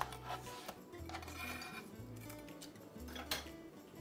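A few light knocks of a chef's knife and pineapple on a wooden cutting board, several in the first second and a sharper one about three seconds in, over soft background music with a slow, low bass line.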